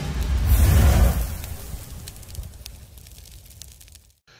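Sound effect from an animated logo intro: a deep whoosh swells about half a second in, then fades away over the next three seconds, with faint scattered crackles over it.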